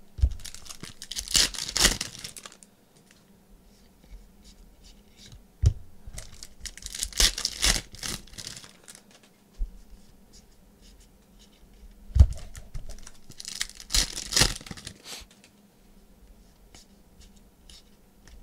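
Foil trading-card pack wrappers tearing and crinkling and the cards sliding against each other as they are flipped through, in three bursts of rustling a few seconds apart, with a couple of soft knocks between.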